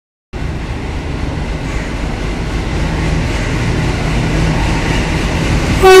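WDP-3A diesel locomotive's 16-cylinder engine rumbling steadily as it rolls in, growing a little louder as it nears. Near the end its horn starts, loud and sustained.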